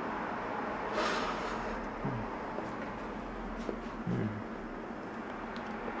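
A person biting into and chewing a s'more of graham crackers, marshmallow and chocolate close to the microphone, with a short crunchy rasp about a second in. Two brief low 'mm' hums of enjoyment come at about two and four seconds.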